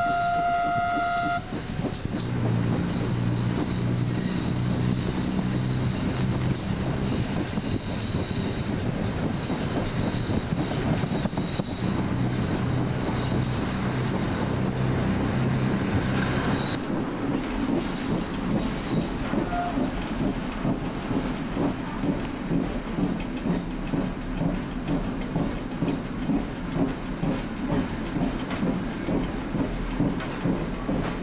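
Italian ALn 668 diesel railcar on the move: its horn sounds briefly at the start, then the underfloor diesel engine drones steadily under the running noise of the train. About halfway through the sound changes abruptly to a rougher, rhythmic pulsing of engine and rail noise, about one and a half beats a second.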